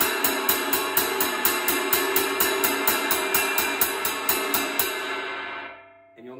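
Zildjian cymbal struck with a wooden drumstick in a steady stream of strokes, about four a second, played with the push-pull wrist technique. The strokes stop about five seconds in and the cymbal's ring fades out.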